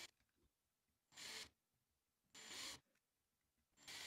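Cordless drill with a small bit drilling holes through a plastic enclosure, running in short, faint bursts about once every second and a bit.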